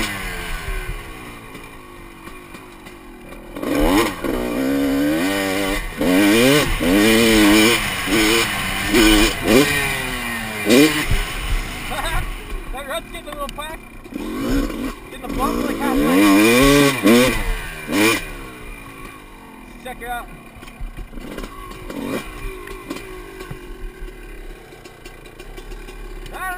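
Two-stroke dirt bike engine heard from the rider's helmet camera, revving up and falling back again and again under throttle, with loud surges about four seconds in, near the middle and again about two-thirds through.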